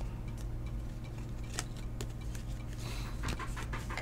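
Trading cards being handled and sorted, giving a few faint, light clicks and taps, over a steady low hum.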